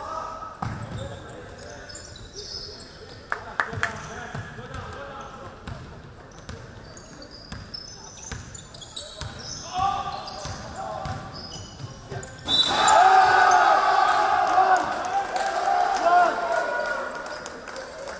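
Basketball game in an empty hall with no crowd noise: a ball being dribbled on the court and sneakers squeaking, with players calling out. About twelve seconds in, loud shouting breaks out and runs on over the play.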